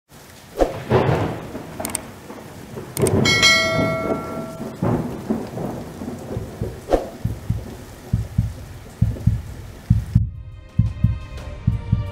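Thunderstorm sound effect: rain hiss with repeated rumbles and cracks of thunder. A click and a ringing bell-like chime come about three seconds in. Music takes over about ten seconds in.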